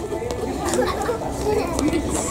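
Indistinct talking and chatter of several people, with no clear words.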